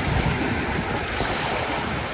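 Small waves breaking and washing up a sandy beach in a steady wash of surf, with wind rumbling on the microphone.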